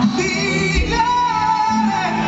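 Live band with singing, recorded on a phone from the audience at a concert. About a second in, a sung note glides up and is held.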